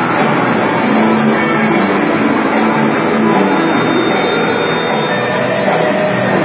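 Live rock band playing an instrumental passage: electric guitars over bass, with a drum kit keeping a steady beat on the cymbals.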